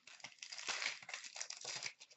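Plastic trading-card pack wrapper crinkling and tearing as it is opened, a dense crackle lasting most of two seconds.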